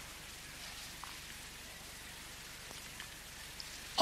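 A pause between sentences filled with the steady hiss of an old recording, with a low hum beneath it and a few faint ticks.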